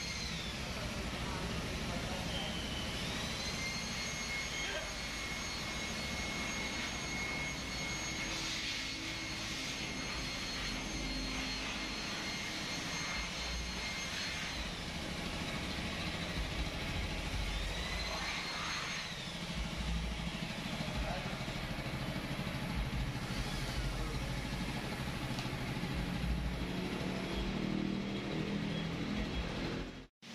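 Steady machine noise with a high, thin whine that rises in pitch and levels off about three seconds in, and again about eighteen seconds in, as a motor spins up and runs on.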